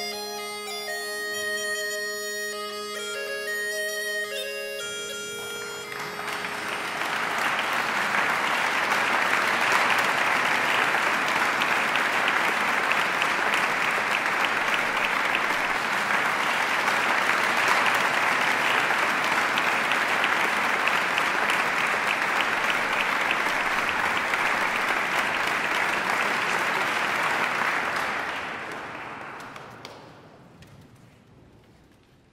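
A bagpipe playing a melody over a steady drone for the first five seconds or so, then audience applause, louder, for about twenty seconds, fading away near the end.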